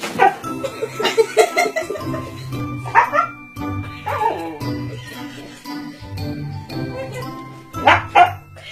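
Background music with a husky's vocal cries over it: short yelps and whining calls that slide down in pitch, the clearest about three and four seconds in and again at the end.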